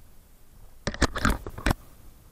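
A few sharp clicks and knocks about a second in, close to the microphone: a fishing rod and spinning reel being handled while a big fish is brought to the landing net.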